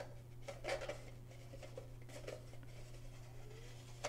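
Faint scraping and a few light clicks of 3D-printed plastic parts being fitted and twisted together by hand, over a steady low hum.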